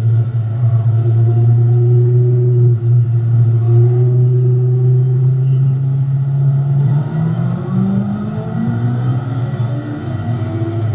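Dwarf race car's engine heard from inside the cockpit, running loud and steady at a constant pitch. About seven seconds in, its pitch climbs in steps as the car accelerates.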